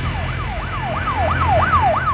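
An electronic siren in a fast yelp, its pitch sweeping up and down about three times a second, over a low steady hum.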